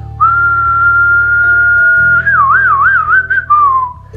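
A person whistling one long, steady, loud note that breaks into a wavering up-and-down warble about two seconds in, then slides lower near the end. Quiet background music runs underneath.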